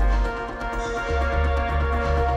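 Live electronic music played on synthesizer gear: held synth tones over a deep bass, with a fine ticking pattern on top. The bass drops out just after the start and comes back about a second in on a new note.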